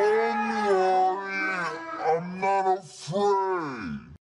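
A young man's voice calling out "James" in long, drawn-out, wavering tones, about four stretched calls, the last falling in pitch.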